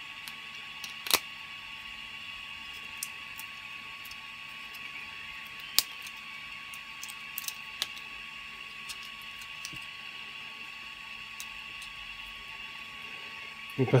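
Light clicks and taps of a 3D-printed plastic part being turned over and picked at in the hands, over a steady machine whir with a faint high hiss, the kind a 3D printer's cooling fan makes.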